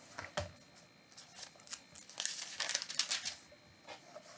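Paper book pages rustling as they are handled and turned: a run of short, crisp papery scrapes, busiest in the second half.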